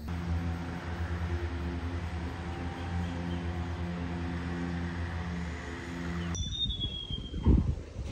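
Steady low drone of a distant boat engine, droning on with a slight pulse. It cuts off abruptly about six seconds in. A short high falling whistle and a few low thumps follow near the end.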